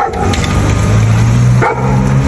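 A dog barking, with a sharp bark near the end over a low steady hum.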